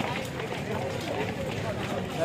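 Voices of a crowd of young people on the move in the street, talking and calling over a steady street-noise background.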